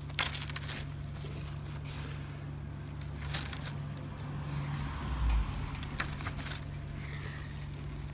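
Knife cutting through a crisp grilled toast on a wooden board: scattered, irregular crunches and crackles of the toasted crust, over a steady low hum.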